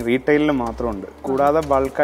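A man's voice speaking, over a low steady hum.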